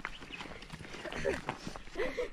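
Footsteps on a dry dirt trail strewn with stones and dry leaves: a few scattered, faint steps, with faint voices in the background.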